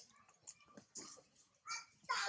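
Faint small clicks and rustles, then near the end a brief high squeak with several stacked tones: an infant macaque whimpering.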